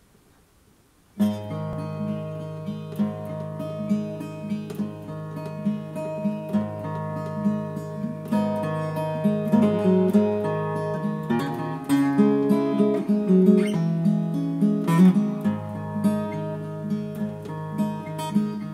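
Solo acoustic guitar played fingerstyle, starting about a second in: the instrumental introduction to the song. Low bass notes ring on under a line of quickly picked higher notes.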